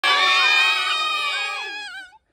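A group of children shouting and cheering together, many high voices at once, fading a little near the end.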